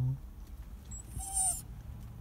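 Small dog whining once, a short high-pitched cry about a second in; he is crying from anxiety at being left behind.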